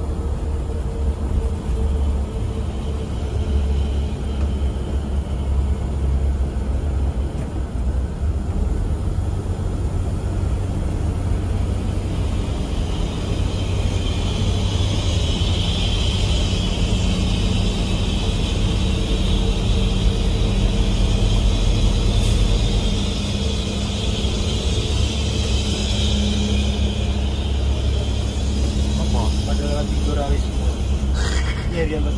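Cabin noise of a Mercedes-Benz 1626 coach underway at speed: a steady low rumble of engine and tyres on the road, with a higher hiss that grows louder from about twelve seconds in until near the end.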